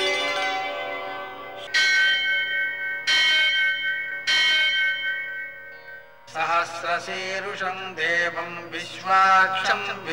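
A bell struck three times about a second apart, each strike ringing on with a clear, steady tone, as at a temple. About six seconds in, a voice starts chanting a Sanskrit mantra over a drone.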